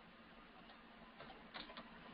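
A few faint computer keyboard keystrokes, about four light clicks in the second half, as digits are typed into a form field, over quiet room tone.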